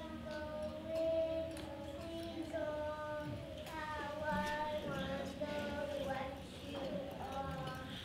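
A voice singing a wordless tune in a run of held notes, with a few light clicks in between.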